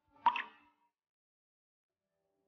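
A single short plop about a quarter second in, over in under half a second.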